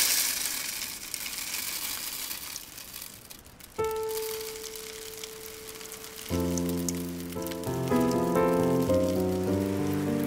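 Birdseed poured from a plastic tub into a plastic bird feeder, a dense rattling rush of falling seed that is loudest at first and fades over about three seconds. About four seconds in, gentle instrumental Christmas music begins with one held note, and chords come in about six seconds in.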